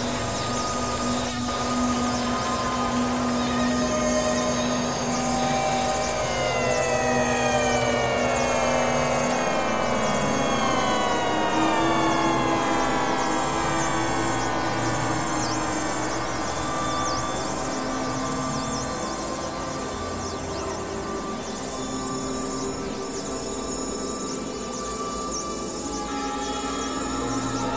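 Dense experimental electronic music with layered drones. A steady low tone holds for the first third, then many overlapping tones slide downward in pitch through the middle, over a high pattern that repeats throughout.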